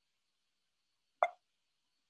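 A single short click about a second in, otherwise near silence.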